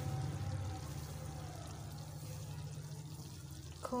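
Lit gas stove burners giving a steady low rumble that eases slightly toward the end, with the milk heating on one of them.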